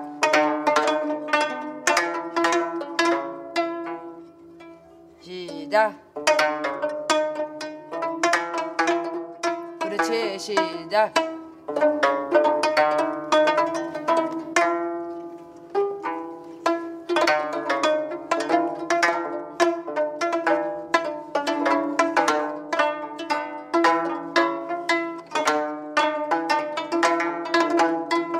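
Gayageum, the Korean twelve-string zither, plucked note by note in a simple melody, with a short pause about four seconds in. Around ten seconds in, one note is bent and wavers in pitch as a string is pressed.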